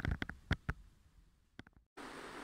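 A few short, sharp handling clicks and taps as a camera is brought against a telescope eyepiece, thinning out to a brief dead silence near the end.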